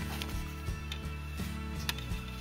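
Background music with a steady run of low notes, and a few light clicks from a plastic DVD case being handled.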